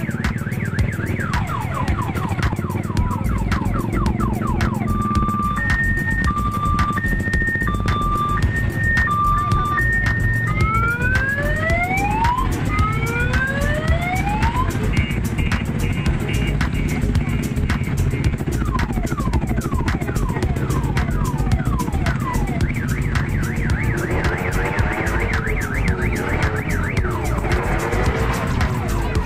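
Crowded night-market din of motorcycle engines and loudspeaker music. About five seconds in, an electronic siren sounds a two-tone hi-lo pattern for several seconds, then a run of rising wails, then a brief rapid beeping. Short sliding electronic tones come and go through the rest.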